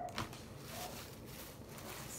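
Faint rustling of a thin plastic shopping bag being handled, with a short tap near the start.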